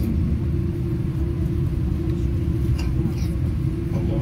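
Steady low rumble of a moving vehicle heard from inside, with a constant low hum running through it.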